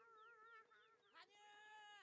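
Near silence, with only a faint wavering, high-pitched sound from the anime's soundtrack playing very quietly underneath.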